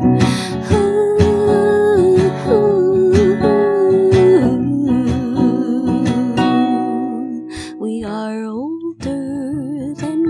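A woman singing long held notes with vibrato over a strummed acoustic guitar, her voice sliding up about eight seconds in.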